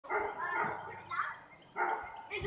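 Children's voices calling out in short bursts, with a brief pause just before the end.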